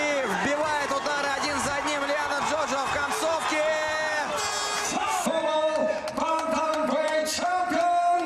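Arena crowd cheering and shouting, with loud shouted voices rising and falling about three times a second; steady held tones join in about five seconds in.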